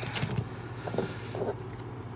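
Trading cards being handled on a table: a few faint, short rustles and taps, over a steady low electrical hum.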